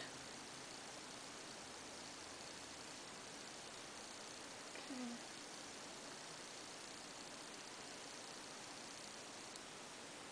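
Quiet room tone: a steady, even hiss from the recording, with one brief hum of a voice about five seconds in.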